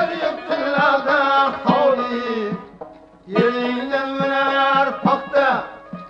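Uzbek Khorezm folk song: a man singing long, wavering held notes over plucked-lute and hand-drum accompaniment, with a short breath pause near the middle.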